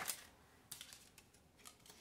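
Tarot cards shuffled by hand: a run of quick card clicks that stops just after the start, then a few faint clicks as cards are handled and one is drawn.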